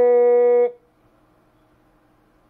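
A loud, steady buzzy tone with many overtones, held perfectly level and cut off abruptly about 0.7 s in, leaving only a faint low electrical hum.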